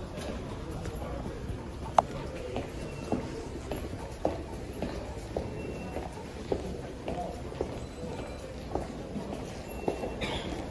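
Footsteps of people walking on a hard station passage floor, about two steps a second, with one sharper step about two seconds in, over a steady background hum of the station.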